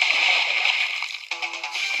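Film soundtrack of a toilet flushing, a rush of water over music, heard through a small portable DVD player's speaker. The rush thins out about a second in, leaving the music.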